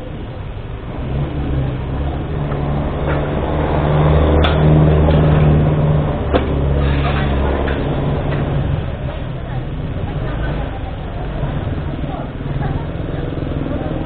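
A motor vehicle's engine running close by, swelling for a few seconds and then easing off, with two sharp clicks near the middle.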